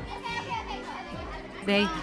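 Children's voices chattering over background music, with a woman starting to speak near the end.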